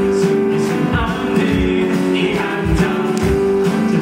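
Live singing by male performers into handheld microphones, over amplified instrumental accompaniment.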